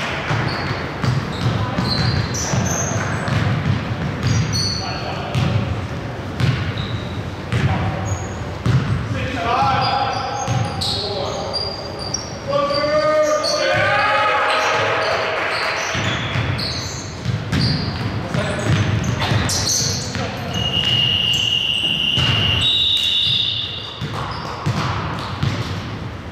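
A basketball bouncing on a hardwood gym floor, with sneakers squeaking and players shouting in the echoing hall. About twenty seconds in, a referee's whistle sounds with a long blast, then a higher second one.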